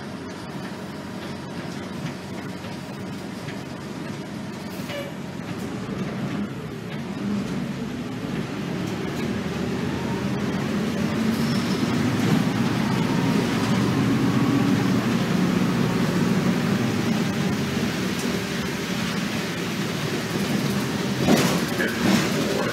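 Inside an RTS transit bus: steady engine and road rumble that builds as the bus pulls away and gathers speed, is loudest about midway, then eases off. A brief louder sound comes near the end.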